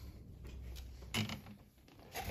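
Faint handling noise as a pinned fabric strip is picked up off a wool pressing mat, with one short, slightly louder sound just over a second in.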